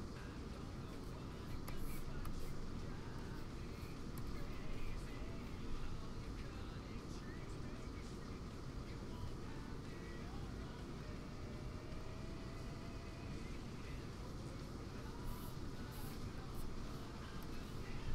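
Heavy rain coming through a nearby window, a steady hiss, with faint background music underneath.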